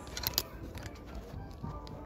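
Clothes hangers clicking against a metal clothing rack as garments are pushed along it: a quick cluster of sharp clicks in the first half second, and a few more about a second in.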